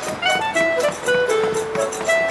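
Background music: a melody of held notes over a quick, steady percussive beat.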